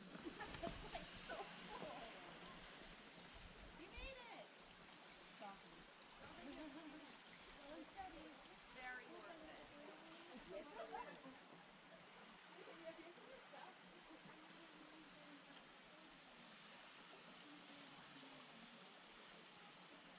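Faint, steady hiss of a thin waterfall, with distant voices of hikers talking that come and go over it.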